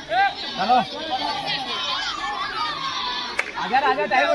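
Boys' voices calling and chattering over a kabaddi raid, with a raider's rapid, repeated chanting rising near the start and again near the end.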